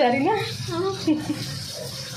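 A woman speaks a few words, then water runs steadily from a tap.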